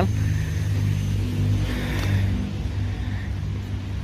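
Road traffic beside the median: a low, steady engine hum, with a vehicle's passing noise swelling and fading about halfway through.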